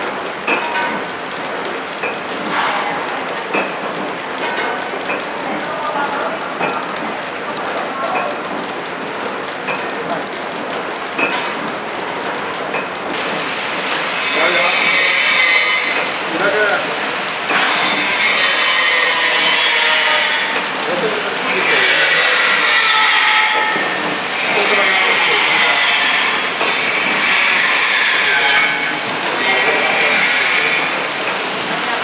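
Horizontal flow-wrap packing machines running: steady mechanical noise with faint ticks about once a second. About halfway through it turns louder and hissier, in stretches of a few seconds that change abruptly.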